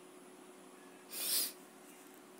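A person's single short breath about a second in, over faint room tone.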